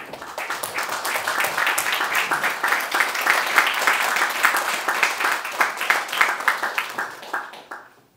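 Audience applauding, building up quickly, holding strong, then dying away near the end.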